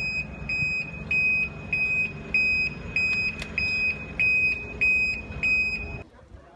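A high-pitched electronic beep repeating evenly, a little under two beeps a second, over a steady low hum; it stops abruptly at the end.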